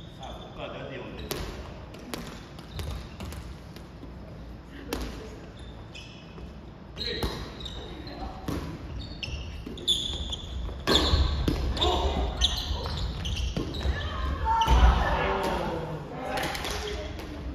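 A soft volleyball rally in a gymnasium: repeated hand hits on the ball and short sneaker squeaks on the wooden floor, echoing in the hall. Players' voices and shouted calls grow louder over the second half.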